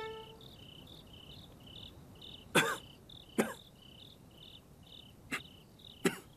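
Crickets chirping steadily at about three chirps a second. Over them an injured man gives three short, sharp coughs, about halfway in, a second later, and near the end.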